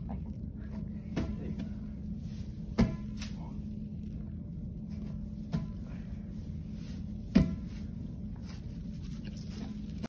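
An inflated exercise ball being thrown and caught, giving a few sharp slaps against the hands, the loudest about three seconds in and again about seven seconds in, over a steady low hum.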